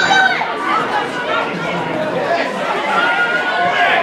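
Voices at a football match during live play: several people calling out and chattering over one another, with a rising shout right at the start.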